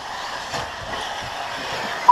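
Radio-controlled buggies running on a dirt track: a steady, even noise with a few faint knocks.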